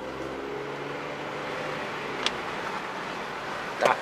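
Supercharged 3.0-litre V6 of a 2012 Audi A6 quattro heard from inside the cabin on the move, its note easing gently lower as the revs drop, then giving way to a steady road and tyre hum. There is one light click a little over two seconds in.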